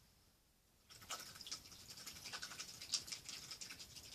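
Close scratching and rustling with many fine rapid ticks, starting about a second in: the handling of painting materials near the microphone.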